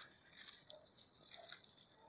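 Faint, scattered rustling and crackling of leaves and twigs underfoot, close to quiet.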